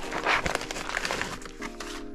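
Plastic packaging crinkling and rustling in the hands as a bag of RC parts is picked up and opened, a string of quick crackles.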